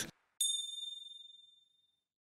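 A single high-pitched bell-like chime about half a second in, ringing out and fading away over about a second, set in dead silence: a transition sound effect between news items.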